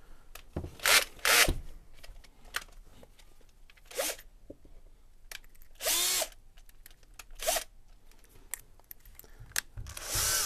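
Cordless drill run in about five short trigger bursts, its motor whirring up and falling away each time, the longest about half a second near the middle: drilling a pilot hole into a piano's soundboard rib.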